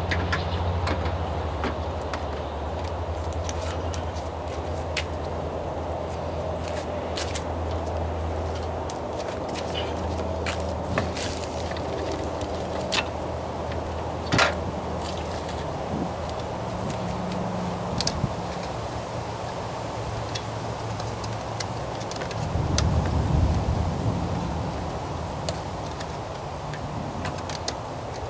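Hands handling a car's plastic headlight assembly and its wiring: scattered sharp plastic clicks and knocks over a steady low hum, which swells into a louder rumble near the end.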